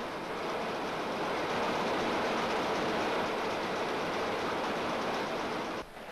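Steady, fast mechanical clatter of a rotary newspaper printing press running, fading out just before the end.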